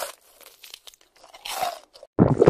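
Crunching and crinkling of a plastic snack packet as a crispy seaweed snack is taken and bitten, in two short bursts: one at the start and one about a second and a half in.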